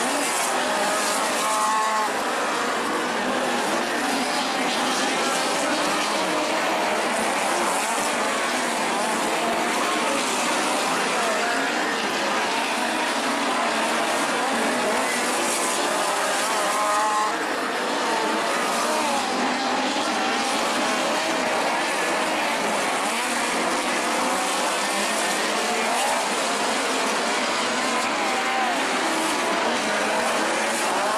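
Midget race cars running laps on a dirt oval, several engines heard at once with their pitch rising and falling as they circle, at a steady loud level throughout.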